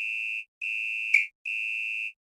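Breakdown of a kuduro dance track: a high electronic alarm-like beep, one steady pitch, repeats a little more than once a second with the drums dropped out.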